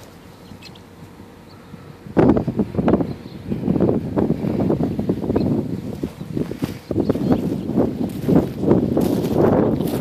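Footsteps and rustling through reeds and tall grass at the water's edge, starting about two seconds in after a quieter stretch and going on as a dense, irregular crunching and swishing.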